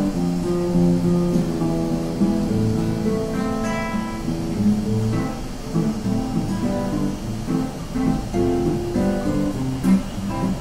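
Acoustic guitar being flatpicked: a continuous run of picked single notes. There is a sharp click just before the end.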